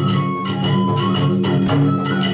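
Kagura hayashi music: a drum and small hand cymbals striking a steady beat, about two to three strokes a second, with ringing between strokes over a sustained melody line.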